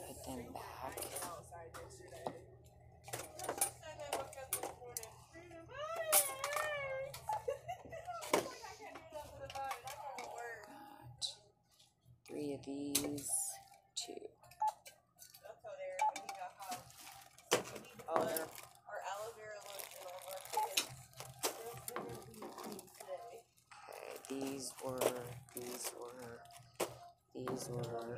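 Indistinct voices in the background, with the clicks and rustles of items and plastic bags being handled at a self-checkout.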